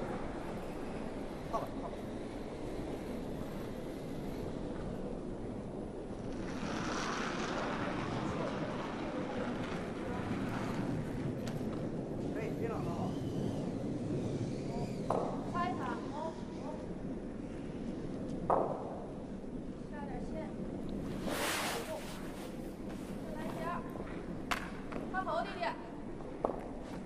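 Curling stone running down the pebbled ice with a steady low rumble, while the players' brooms sweep in front of it in stretches and the players call out in faint shouts. A few short sharp sounds break through.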